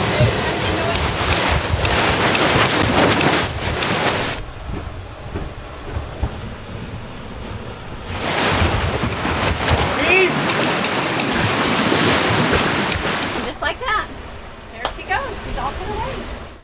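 Wind buffeting the microphone over the rush of water past the hulls of a sailing catamaran under way at about 11 knots. It drops away for a few seconds about four seconds in and comes back strongly near eight seconds.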